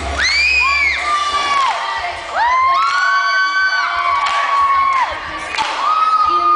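A group of young children shouting and cheering in long, high-pitched held calls, several voices overlapping in two main waves with a short lull around two seconds in.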